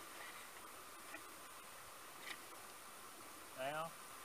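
Quiet outdoor background with a faint, steady high-pitched hum. Near the end comes a short call in a man's voice.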